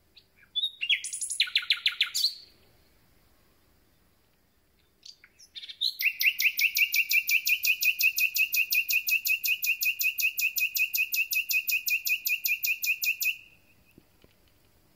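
Common nightingale singing: a short phrase of rapid notes, a pause, then a long run of fast, evenly repeated notes lasting about seven seconds.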